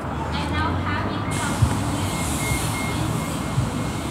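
City street traffic noise with faint voices; about a second in, a loud hiss from passing traffic sets in over the road noise, with a faint broken beeping under it.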